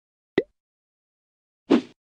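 Two short logo-animation sound effects: a quick blip falling in pitch about a third of a second in, and a brief noisy hit near the end.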